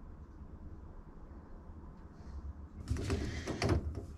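A tight-fitting 3D-printed plastic part being forced by hand onto the end of a corrugated plastic hose. About three seconds in there is a second or so of plastic scraping and creaking as it is pushed on.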